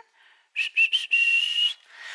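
A whistle blown in three short blasts and then one longer blast that rises slightly in pitch.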